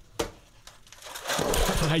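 A hammer chipping at a block of ice holding a frozen credit card in a tub in a steel sink. There is one sharp knock near the start, then a rapid run of chipping taps in the second half.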